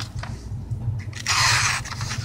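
A sheet of printed paper rustling as it is handled by hand, in one rustle of about half a second past the middle, with a few faint clicks before it and a steady low hum underneath.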